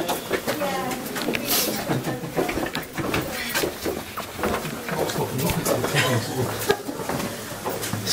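Indistinct talking, with scattered small clicks and knocks.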